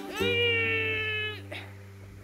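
Cat meow sound in background music: one long meow that rises at its start, holds for about a second, then fades, over a low held bass note.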